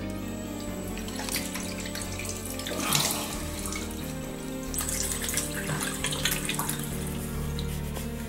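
A bathroom sink tap running, with water splashing as hands scoop it onto a face, under background music with long sustained notes.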